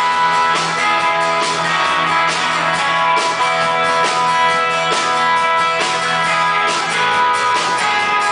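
Live indie rock band playing an instrumental passage: strummed acoustic guitar with electric guitar and bass guitar, at a steady loud level.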